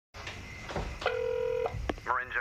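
A telephone call going through: a steady ringing tone on the line for about half a second, then a click as the call is picked up.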